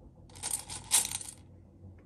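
Small round beads clattering in a metal muffin-tin cup as a small doll figure is pushed down into them: a dense run of sharp clicks lasting about a second, loudest near the middle.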